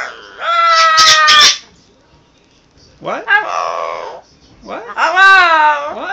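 Double yellow-headed Amazon parrot calling: three loud, drawn-out, speech-like vocalisations, the middle one rougher and the last wavering down and up in pitch.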